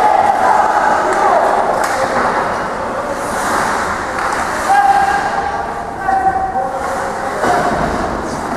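Ice hockey rink during play: several voices calling out in long, drawn-out shouts at different pitches over a steady din from the ice and the stands.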